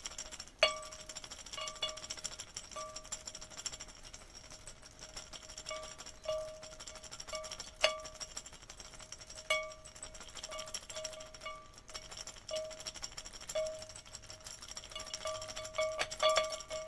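Folded paper name slips rattling in a container being shaken, with two sharp knocks, one about half a second in and one near the middle. Light music with a repeated note plays underneath.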